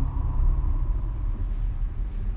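A steady low rumble from the film's sound track, with a faint thin tone above it.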